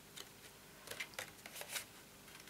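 Cardstock being folded and pressed into a box corner by hand: a few short crackles and clicks of the card, a cluster about a second in and the loudest just before the end.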